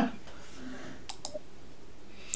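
A pause in a video-call conversation with low background noise and two faint, quick clicks a little over a second in.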